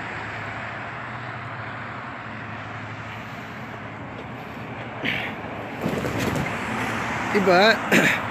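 Steady roadside traffic noise from passing vehicles, with a man's voice starting near the end.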